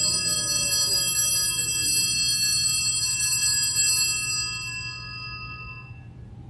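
Altar bells rung at the elevation of the chalice during the consecration: a cluster of high, bright ringing tones that hang in the air and die away near the end.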